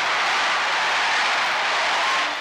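Stadium crowd cheering in a steady, even roar during a football play, heard on a 1960 newsreel sound track.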